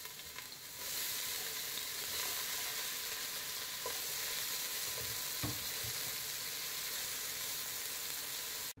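Chopped onion sizzling in hot vegetable oil in a stainless steel pot as it is stirred with a wooden spatula. The sizzle grows louder about a second in and then holds steady, with a couple of light knocks from the spatula.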